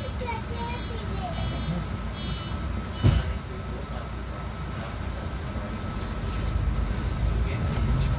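City bus heard from inside the passenger cabin: a steady low engine rumble, with one heavy thump about three seconds in. The rumble grows louder near the end as the bus moves off. Voices in the cabin come through in the first few seconds.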